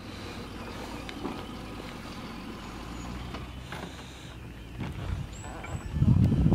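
Car engine idling with a steady low hum, with a few faint clicks and knocks over it.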